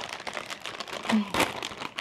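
Clear plastic bag crinkling as it is pulled open, with a louder crinkle a little after halfway through.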